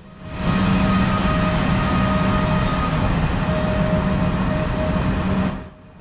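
Afrosiyob (Talgo 250) electric high-speed train moving along the platform: loud, steady rolling noise with a steady low hum and a fainter higher whine. It swells in within the first half-second and falls away shortly before the end.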